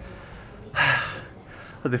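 A man takes one quick, audible breath, a short hiss of air about three quarters of a second in, between sentences. His speech starts again near the end.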